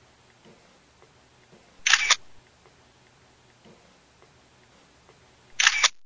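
Two camera shutter clicks, each a short sharp snap, one about two seconds in and one near the end, against quiet room tone.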